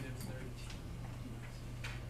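A few sharp ticks of a stylus striking a writing surface while an equation is handwritten, the strongest near the end, over a steady low hum.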